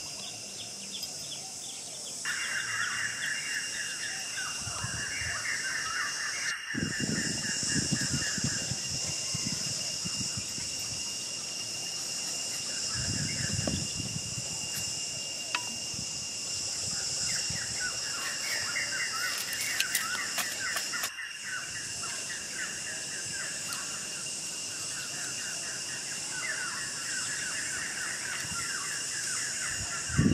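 Birds chirping in quick runs over a steady high-pitched hiss and a thin, steady whistle-like tone. Low rustling and knocking now and then as the bamboo trigger sticks are handled in the sandy hole, with two abrupt breaks in the sound.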